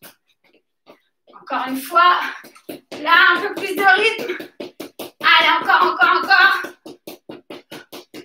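A woman's voice in three short phrases, over a run of quick, light, sharp taps at about three to four a second.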